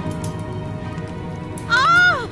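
Background music with sustained tones, then near the end a woman's high, anguished wailing cry that swoops up and down in pitch.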